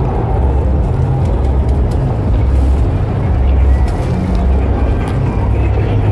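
City street traffic: a steady low rumble of vehicle engines.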